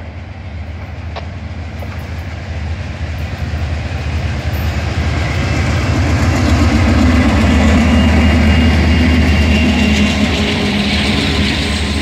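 A Norfolk Southern freight's lead diesel locomotives, a GE D9-44CW and an EMD SD60E, running at speed and growing louder as they approach and pass, loudest about seven to ten seconds in. The engine drone then eases slightly into the rumble of double-stack intermodal cars rolling by.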